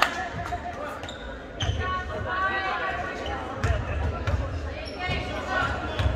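Basketball bouncing on a hardwood gym floor, a few dull thuds a second or more apart, under scattered crowd voices.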